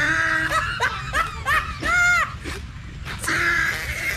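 A man laughing and snickering in short, high-pitched bursts. The sounds come in a quick run in the middle, ending in one longer high squeal.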